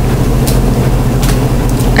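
Steady low background hum in a meeting room's audio, with a couple of faint clicks.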